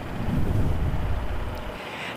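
Wind buffeting a microphone outdoors: a steady rushing noise with a low rumble that eases off near the end.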